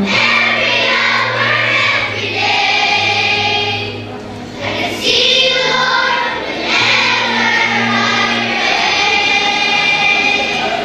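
Children's choir singing together, with held low accompaniment notes underneath. The singing dips briefly about four seconds in, then carries on.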